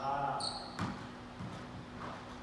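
A brief voice at the start, then a short high squeak of a court shoe on the wooden squash-court floor. Near the middle comes a single thud of a squash ball bouncing.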